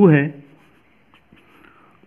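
A spoken word, then faint scratching of a pen writing on paper.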